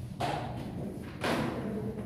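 Two short thuds about a second apart, the second one louder.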